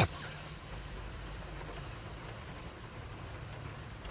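Steady car-cabin background noise: a low rumble under a faint hiss, with no distinct events.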